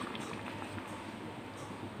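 Fish and ridge-gourd curry simmering in a kadai, a quiet, steady bubbling hiss.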